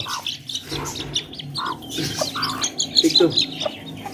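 A hen clucking and her young chicks cheeping in short, scattered calls.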